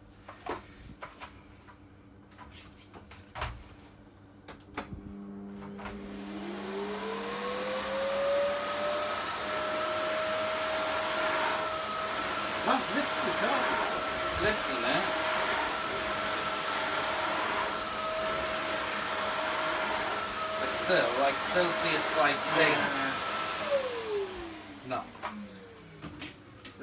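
Cylinder vacuum cleaner switched on, its motor whine rising to full speed a few seconds in, then running steadily while it sucks up sand from the carpet, with scattered ticks and clatter. Near the end it is switched off and the whine falls away.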